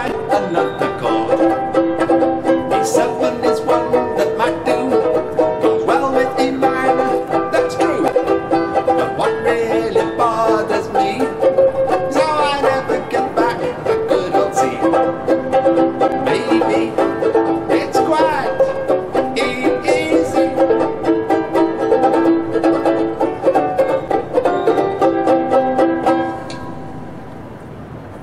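Banjulele strummed in a steady rhythm through a series of chord changes, with a man singing a comic song over it. The playing stops shortly before the end.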